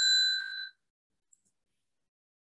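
A single bell ding, one clear ringing strike that fades out within the first second. It is a timekeeper's bell marking the start of a one-minute preparation period.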